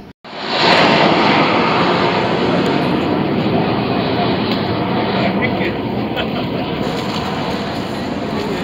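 Jet noise from the two turbofan engines of an Oman Air Embraer E175 climbing away after takeoff. It cuts in abruptly just into the clip, is loudest around the first second, then slowly fades as the jet recedes.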